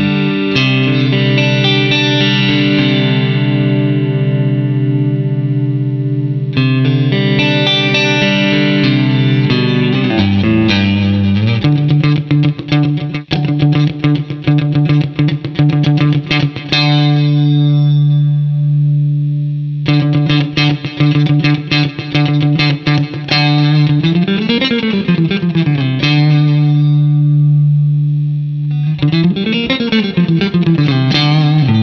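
Vola OZ electric guitar played through an amp with a bright tone. It opens with sustained ringing chords, then moves to fast single-note picked runs with crisp pick attacks. Near the end come string bends that rise and fall in pitch.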